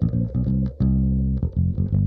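Background music with a prominent bass line, its low notes changing every fraction of a second.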